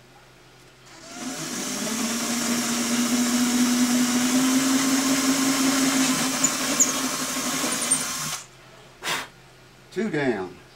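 Cordless drill with a small 11/64-inch bit boring a bridge pin hole through an acoustic guitar's top, its motor running steadily for about seven seconds and then stopping, followed by a brief second burst near the end.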